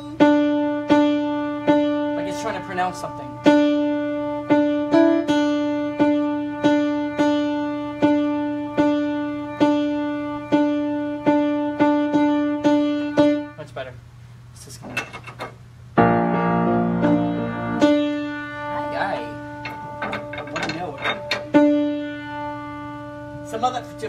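Grand piano with one mid-range key struck over and over, roughly once every three-quarters of a second, as that note is being tuned with a tuning wrench. After a pause a louder chord of several notes sounds, then the same single note is struck again.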